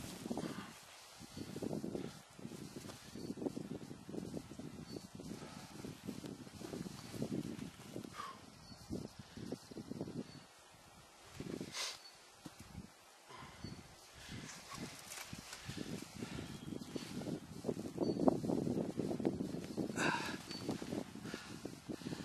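Irregular rustling and scuffing of a dead black bear being lifted by a leg, shifted and handled on dry forest ground, with footsteps. It grows louder and busier near the end as the bear is handled close up.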